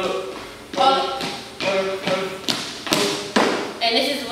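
About five sharp taps and thuds of sneakers striking a dance studio floor as dancers step through a routine, each followed by short voiced syllables.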